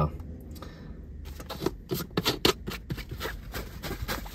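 Plastic supplement tub handled and its screw-on lid twisted open: a run of irregular light clicks and scrapes starting about a second in.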